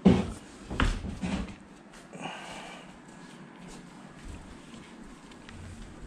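A large wooden TV wall panel being lifted and handled, giving a few knocks and bumps in the first second and a half, the first one the loudest. A brief higher-pitched sound follows, then quieter shuffling.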